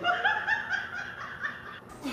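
High-pitched laughter in a quick run of pulses, about five a second, cut off abruptly near the end.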